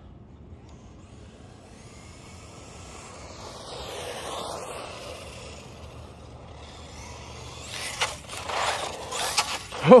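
Traxxas Mini E-Revo VXL 1/16-scale brushless RC truck running on pavement; its motor and tyre noise swells and fades as it passes about four seconds in. Near the end comes a run of sharp knocks and scrapes.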